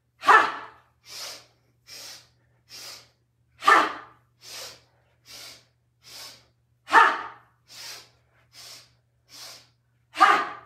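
A woman doing the breath of joy breathing exercise: three quick sniffs in through the nose, then one loud, forceful 'ha' breathed out through the mouth. The cycle repeats about every three seconds, with three loud exhales and nine sniffs in all.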